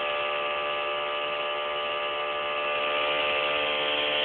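Bedini SSG pulse motor running steadily, a hum made of a stack of steady tones, as it charges a cellphone battery through its diode.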